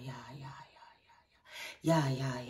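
A woman's voice vocalizing light language: a quick run of short syllables at a steady pitch that trails off into soft whispered sounds, with a breathy whisper shortly before the voice starts again at the very end.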